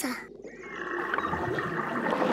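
Cartoon sound effect of water rushing and gurgling through a garden hose, swelling louder as it comes up toward the nozzle.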